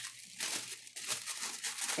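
Packaging crinkling and rustling as it is handled, in several short rustles.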